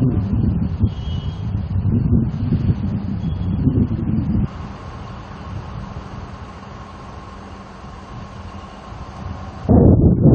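Wind buffeting the microphone as a loud, uneven low rumble. About four and a half seconds in it cuts suddenly to a quieter steady hiss with a faint steady tone, and the rumble returns just before the end.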